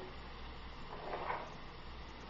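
Faint steady hiss of filet steaks sizzling in a covered pan, with a soft, brief handling sound about a second in.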